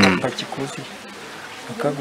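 A man's voice: a short, loud utterance falling in pitch at the start, then a pause, and he speaks again near the end.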